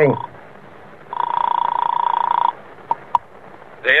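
Telephone sound effect from an old-time radio drama: one steady buzzing ring heard over the line, about a second and a half long, then two short clicks as the call is answered.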